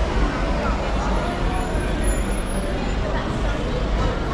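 Engine of a white Mercedes-Benz Sprinter van running as it moves slowly past close by, over a steady low rumble and crowd chatter.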